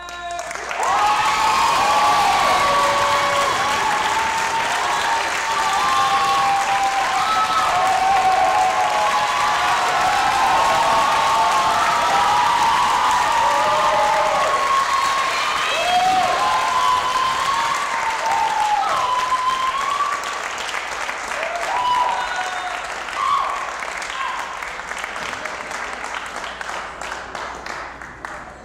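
Audience applauding and cheering, with many voices shouting over the dense clapping. It breaks out all at once and thins away over the last few seconds.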